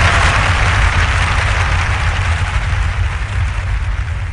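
Cinematic sound design from the backing track: a deep steady rumble under a hissing wash that slowly fades away.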